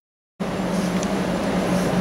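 Silence for a moment, then from about half a second in, steady street traffic noise with a low hum underneath.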